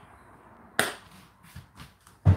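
A single sharp knock about a second in, followed by two lighter taps near the end, like something hard being handled or set down.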